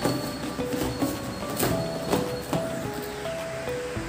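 Background music: a slow melody of held notes stepping from one pitch to the next.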